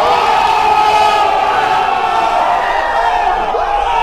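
A crowd of people shouting and cheering together in one long, loud, held cry that cuts off suddenly at the end.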